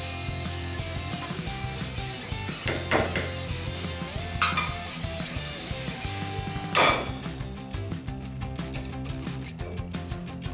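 Metal spoon knocking and scraping in a stainless steel bowl as ketchup is emptied into a pot: a few sharp knocks, the loudest about seven seconds in.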